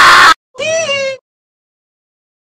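A man's loud scream cuts off suddenly, then after a short gap a single cat meow sounds, about two-thirds of a second long.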